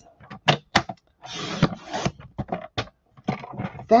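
Sheet of cardstock being handled and positioned on a paper trimmer: a few sharp light clicks and taps, and a brief rustle of paper sliding lasting about a second, starting just over a second in.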